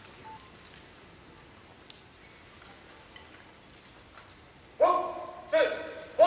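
A large hall's quiet background, then about five seconds in two loud, short shouts in unison from a marching band's members, each dropping in pitch at the end, the call that starts their show.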